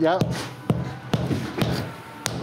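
Rubber mallet knocking a flagstone down into its mortar bed to seat and level it, about four sharp knocks roughly half a second apart.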